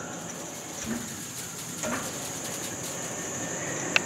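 Crickets chirring in one steady high band, over a low rustling of movement and handling noise.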